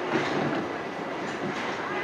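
Bowling alley ambience: a steady rolling rumble of duckpin balls travelling down the lanes, with background voices.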